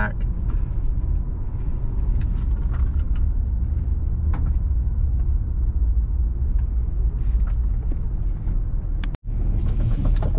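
Steady low rumble of a car driving slowly, heard from inside the cabin, with a few faint knocks and clicks. The sound cuts out abruptly for a split second just after the nine-second mark, then resumes.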